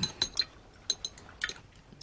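Knives and forks clinking against dinner plates as two people eat: about half a dozen light, scattered clinks.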